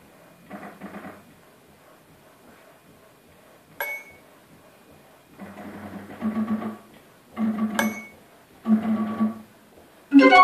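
Sparse start of an abstract piece on a hand-cranked barrel organ and self-built MIDI-triggered carillons: two single bright metallic strikes, about four and eight seconds in, and from about five seconds in three short low organ-like notes about a second apart.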